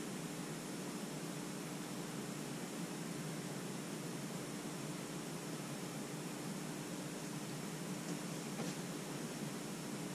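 Steady hiss with a faint, steady low hum (room tone), with faint rustling as sports cards are handled.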